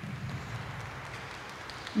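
Steady low murmur of spectators' voices in an ice arena, with a few faint clicks near the end.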